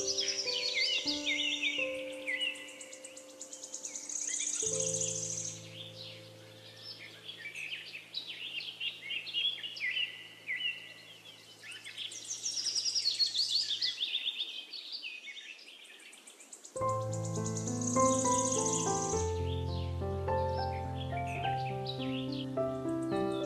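Forest birds chirping and trilling continuously over soft piano music. The low piano notes fade out for a few seconds past the middle, then come back with a fuller passage near the end.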